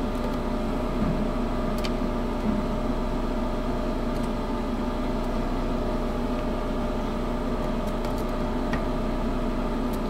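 A steady mechanical hum of running machinery, an even drone with several fixed tones, and a few faint ticks.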